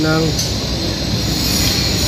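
Loud, steady background machinery noise with a high-pitched hiss running through it, with a voice briefly at the very start.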